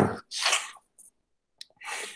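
A man coughing: a harsh cough at the start and a second one about half a second in, then a short breath near the end.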